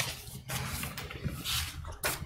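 Quiet pause in a meeting room: a click at the start, then low room noise with a faint hum and faint indistinct movement sounds.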